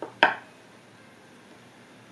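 A single short snap of tarot cards being handled at a wooden table, about a quarter of a second in, then only faint room tone.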